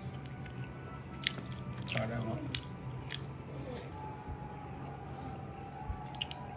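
Someone biting into and chewing a soft cookie sandwich filled with whipped topping, with a few faint crunches in the first half.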